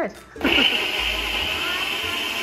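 Single-serve bullet-style countertop blender switching on about half a second in and running steadily as its cup is held pressed down, blending a fruit smoothie.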